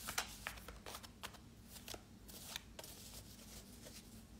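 A deck of MAC (metaphorical associative) cards being shuffled by hand: a quiet run of quick card flicks and slaps, loudest in the first second and thinning out near the end.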